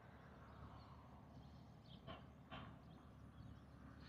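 Near silence: faint outdoor background, with two faint short sounds a half second apart about two seconds in.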